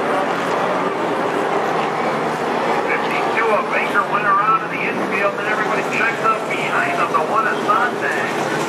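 Late model stock cars running on the oval as the field passes, a steady, loud engine noise, with voices heard over it from about three seconds in.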